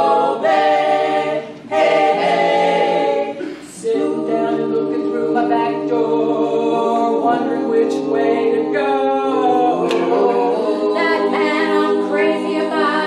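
Women's a cappella vocal group singing blues in close harmony, holding long chords, with brief breaks about a second and a half and three and a half seconds in.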